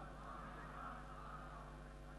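A short pause in an amplified speech: a low, steady electrical hum from the sound system under faint room noise.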